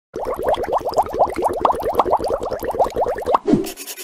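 Cartoon bubbling sound effect: a rapid, even run of short rising plops, about ten a second, ending near the end with one falling bloop and a fading hiss.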